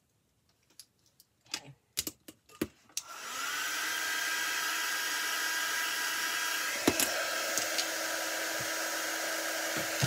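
A few clicks and knocks of handling, then a handheld craft heat gun is switched on about three seconds in: its fan spins up with a brief rising whine and settles into a steady whir with a faint hum, drying the freshly painted wooden beads.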